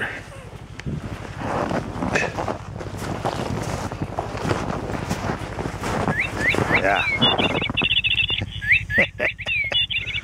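Battery-powered electronic lure switched on inside a lynx trap box, giving rapid, high, warbling chirps over the last few seconds. Before that there is rustling and handling noise, and a low steady hum runs underneath throughout.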